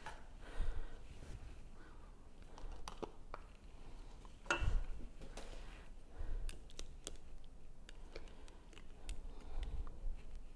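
Quiet canning kitchen handling: a ladle scooping salsa in a stainless steel pot and into a canning funnel on a glass jar, with one knock a little before halfway, then light clicks and scrapes of a plastic bubble-remover tool worked inside the glass jar of salsa.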